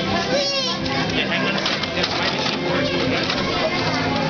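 Busy chatter of many children and adults crowding together, with a child's short high-pitched squeal about half a second in.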